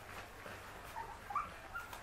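Puppies whimpering while feeding from bowls: three short, high squeaks in the second second, the middle one loudest, over faint eating noise.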